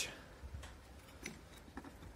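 Faint handling noise: a few soft, scattered clicks and rustles as a used rubber timing belt is picked up and moved by hand.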